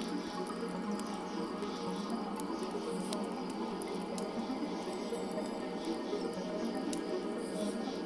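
Wood fire crackling steadily, with scattered sharp pops, under soft ambient music.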